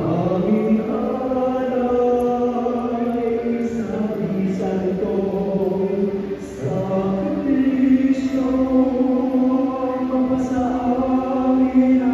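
Slow sung church chant by a group of voices, long notes held and stepping slowly in pitch, with a short break between phrases about six and a half seconds in.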